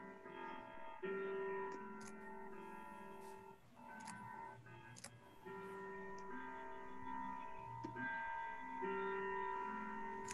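A chiming clock playing a slow melody of ringing bell-like notes, about one new note a second, each ringing on under the next. Heard faintly over a video-call microphone.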